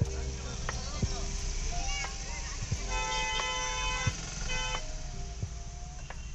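Vehicle horns honking in slow, jammed traffic: one long horn blast about three seconds in, lasting about a second, then a short second blast just before five seconds, over a low steady traffic rumble.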